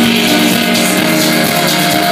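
Loud live electronic music from a band with synthesizers and drums, heard from the audience, with sustained synthesizer tones held steady throughout.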